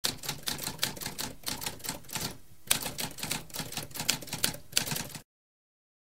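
Typewriter typing: a quick, uneven run of key strikes with a short pause a little over two seconds in, stopping suddenly about five seconds in.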